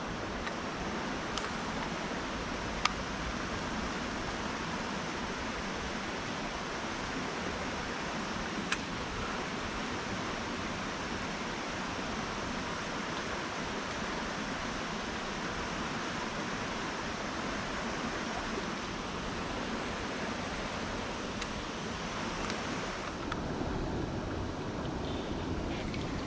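Steady rushing of creek water running over rocks, with a couple of faint sharp clicks.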